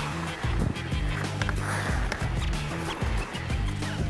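Background music with a steady beat and sustained low notes.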